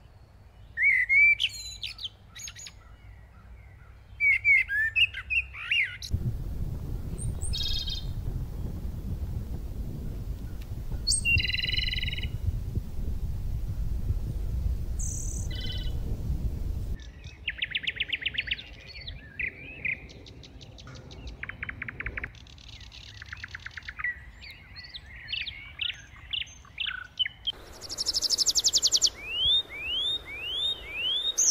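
Songbirds chirping, with short rising calls and several rapid trills. A low rumble runs under them through the middle stretch, and the sound changes abruptly a few times.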